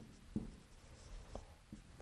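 Dry-erase marker writing on a whiteboard: a few faint, short strokes of the felt tip against the board as a word is written.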